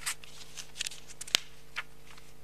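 Sheets of paper being handled and shuffled close to a microphone: a run of short crackles and rustles, with one sharper click a little past halfway, over a steady low electrical hum.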